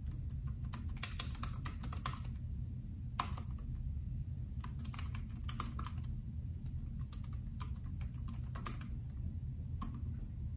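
Bluetooth keyboard keys being typed in several quick bursts of clicks with short pauses between them, over a steady low hum.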